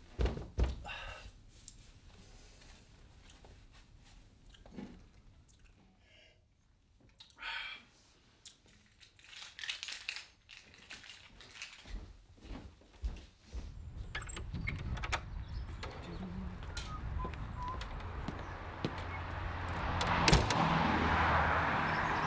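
Scattered knocks and thuds of a door and footsteps indoors, loudest just after the start. Background noise rises in the last third as the front door opens to the outside, with a sharp click shortly before the end.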